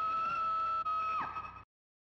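A high-pitched sustained tone held at one pitch with a slight waver, which slides steeply down in pitch just past a second in and cuts off abruptly into silence.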